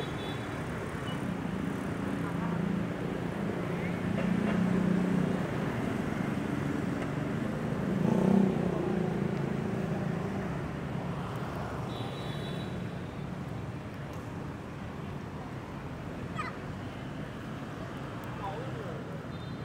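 Street traffic: motorbike and car engines passing close by over a steady traffic hum, loudest a little past the middle and growing fainter later on.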